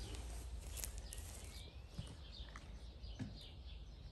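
A European goldfinch twittering faintly in short high chirps, the run starting about one and a half seconds in, with a couple of soft knocks.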